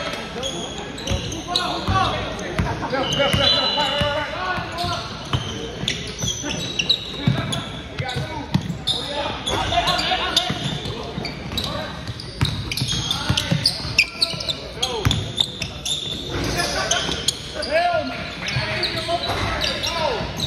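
A basketball bouncing on a hardwood gym floor in repeated sharp knocks during live play, mixed with players' shouts and chatter in a large, echoing gym.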